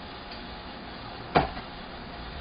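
A single chop of a Chinese cleaver through a piece of green onion onto the cutting board, a sharp knock about one and a half seconds in.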